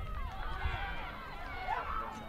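Many voices shouting and calling over one another at once, from players on a lacrosse field and onlookers during live play.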